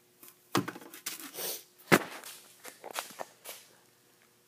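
Handling noise from a metal outdoor light fixture and its parts: two sharp knocks about a second and a half apart, the second the loudest, with lighter clicks and clatter between, as they are moved about and set down on a workbench.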